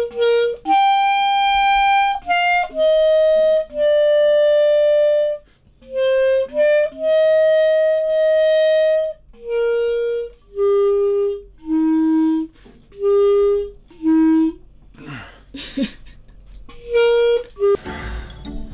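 Solo clarinet playing a slow, simple tune of held single notes, the longest about two seconds, with short breaks between phrases and a longer gap near the end before one last note. The player has been learning the instrument on and off for a year or two.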